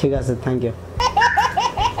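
Laughter: after a short voiced sound at the start, a person breaks into a quick run of high-pitched 'ha' pulses, about seven a second, from about halfway through.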